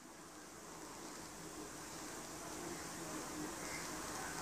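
Faint steady hiss of background noise, slowly growing a little louder.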